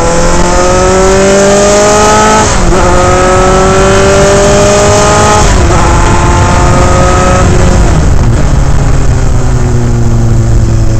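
Onboard sound of a Dallara Formula 3 car's Alfa Romeo four-cylinder engine accelerating hard, its pitch climbing and dropping at two quick upshifts about two and a half and five and a half seconds in. Near the end the pitch falls away as the driver lifts off, and the engine runs on at lower revs.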